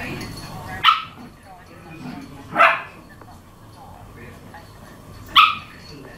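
A dog barks three times in short, sharp single barks: one about a second in, one near the middle and one near the end.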